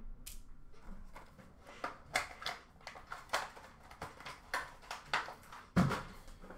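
Hands handling plastic card holders and trading card packs on a counter: a string of small clicks, taps and rustles, with a louder knock near the end.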